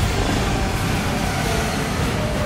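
A steady, loud low rumble of aircraft engines mixed with dramatic trailer music.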